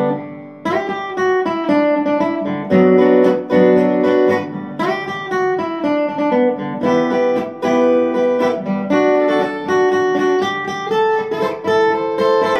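Acoustic guitar played slowly, a picked lead melody mixed with chords, each note ringing on as the next is plucked.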